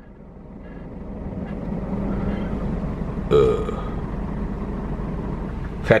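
Scania truck's diesel engine and road noise heard inside the cab, growing louder over the first two seconds and then running steadily.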